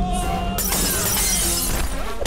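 Fight-scene crash sound effect: a sudden smash about half a second in, its bright noise trailing off over about a second, over background music.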